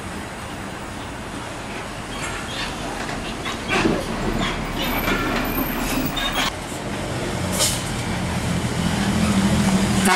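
Heavy diesel trucks on the road, with brief air-brake hisses and squeals a few times, and a truck engine growing louder near the end as a large Hino truck approaches.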